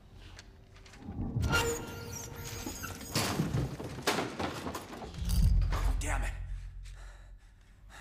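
Horror-film sound design: after a quiet second, a run of loud, sudden crashes and wordless vocal cries, with a deep boom about five seconds in, dying away near the end.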